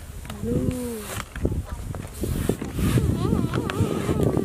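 A long modelling balloon being blown up by mouth, with hard puffs of breath forced into the rubber. A wavering, voice-like tone comes in near the end.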